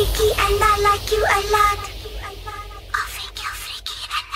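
A high-pitched voice in short phrases with quick upward glides, over a faint steady low bass from the music; from about three seconds in, a run of short sharp clicks and breathy, whispered sounds.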